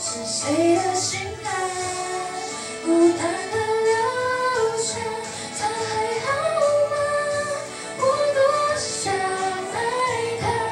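A teenage girl singing a Mandarin pop ballad into a handheld microphone, her amplified voice gliding between held notes.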